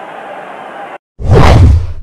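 Muffled crowd noise on old, dull-sounding broadcast audio cuts off abruptly about a second in, followed by a loud whoosh transition sound effect with a deep rumble underneath.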